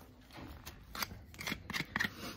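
Farrier's hoof knife paring horn from the sole of a horse's hoof: a few short slicing scrapes, louder toward the end.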